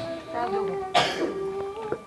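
A man coughs once, sharply, about a second in, close to a microphone. A low held voice sound comes before and after it, the sound of clearing his throat between spoken passages.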